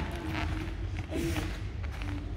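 Sports-hall room sound: a steady low hum with faint, brief voices in the background.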